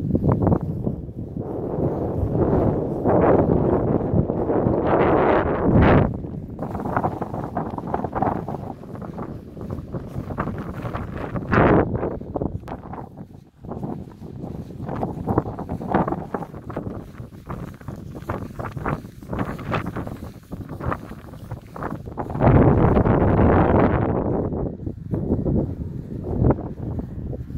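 Wind buffeting the microphone in gusts, heaviest over the first few seconds and again near the end, with many short rustles and knocks of handling in between.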